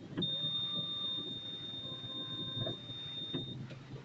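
A single high-pitched electronic beep held steady for about three seconds, over the low rumble of traffic.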